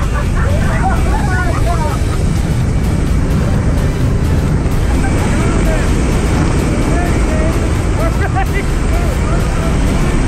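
Loud steady rush of wind and propeller engine noise through the open door of a small jump plane in flight, with muffled shouted voices heard faintly over it.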